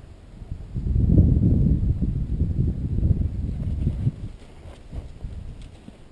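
A horse moving close by on sand, with a rough low rumble that starts about a second in, lasts about three seconds, then fades to quieter shuffling.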